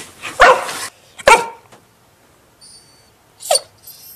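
A dog barking: two loud barks in the first second and a half, then one more short bark near the end.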